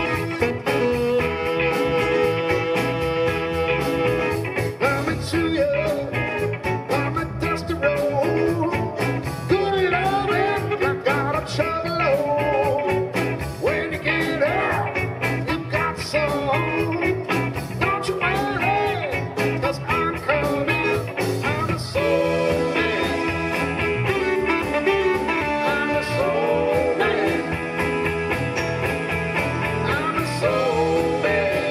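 Live blues band playing an instrumental passage on electric guitar, bass, drums, keyboards and saxophone, with lead lines that bend up and down in pitch.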